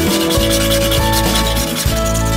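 Background music with a steady beat over a hand tool scraping along the rough live edge of a sassafras slab.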